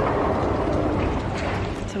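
Steady rushing noise of an outdoor city street at night.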